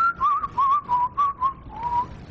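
A person whistling a short run of notes, several with quick trills, starting on a higher note and ending on a short upward slide.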